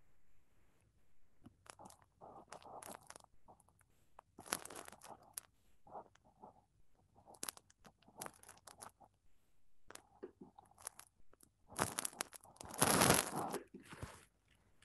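Irregular crackling, rustling and clicking handling noises close to a computer microphone as the computer is being worked, in short scattered bursts with the loudest cluster about a second before the end.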